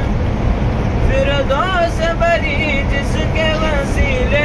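A boy reciting a naat, the Urdu devotional poem, in a melodic chanting voice that comes in about a second in with long gliding phrases, over the steady low rumble of the moving vehicle he is riding in.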